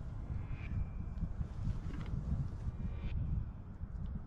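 Wind buffeting the microphone as an uneven low rumble, with two faint clicks about a second apart in the middle.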